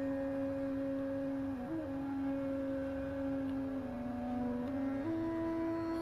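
Soft background music of long held tones. The notes change slowly a few times and step up to a higher note near the end.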